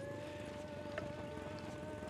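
A flying insect buzzing steadily close by, one unbroken high-pitched hum that holds its pitch.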